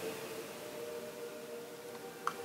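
A faint, steady drone of a few held tones over a light hiss.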